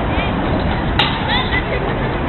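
Outdoor ambience, a steady noise bed with faint distant voices or chirps, and a single sharp click about a second in.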